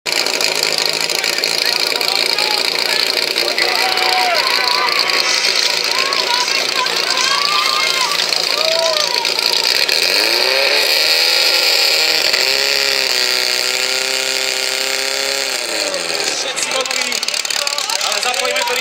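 Portable fire-sport pump engine started about ten seconds in, revving quickly up to a high steady pitch and dropping back after about five seconds, with shouting voices before it starts.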